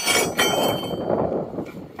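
An aluminium solar-panel tile bracket knocked and set down on a terracotta roof tile. Two sharp metallic clinks, the second about half a second in, each leaving a brief ring.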